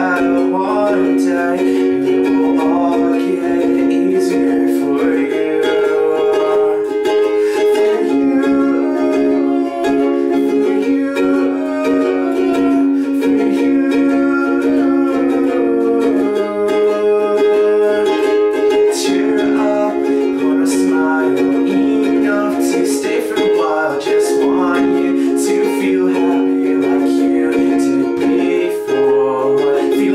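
Ukulele strummed in steady chords, with a man's voice singing over it.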